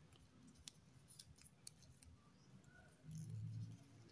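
Faint crinkles and clicks of small squares of scrap paper being folded and creased by hand, with a brief low hum about three seconds in.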